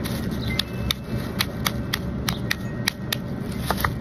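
Small metal hammer tapping a cooked crab's shell to crack it: about a dozen sharp knocks, roughly three a second.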